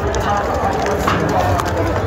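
Many people's voices talking at once, with the scuffing steps of someone walking in sneakers on stone paving.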